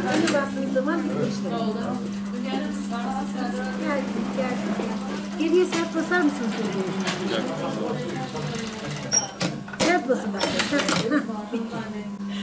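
Industrial lockstitch sewing machine stitching surgical face masks in short runs, with the loudest bursts of clicking stitching near the end. People talk in the background over a steady low hum.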